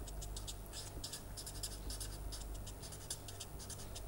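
Permanent marker writing on paper: a faint, rapid run of short scratching strokes as letters are written, over a low steady hum.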